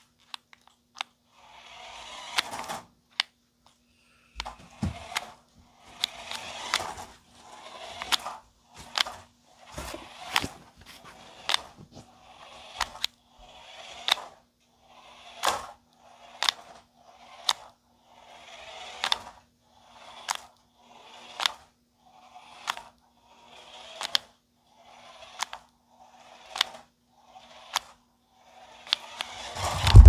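Toy-grade 1:18-scale RC monster truck driving over carpet in short spurts: its small electric motor whirs briefly about once a second, each spurt ending in a sharp click. A loud low thump comes at the very end as the truck reaches the camera.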